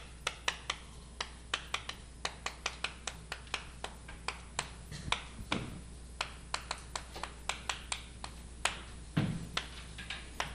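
Chalk on a blackboard while words are written: a quick, uneven run of sharp taps and clicks as the chalk strikes and lifts off the board.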